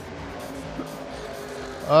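Background music mixed with engine noise from a pack of Stock Car Brasil touring cars racing, at a moderate, even level. A man's voice cuts in loudly at the very end.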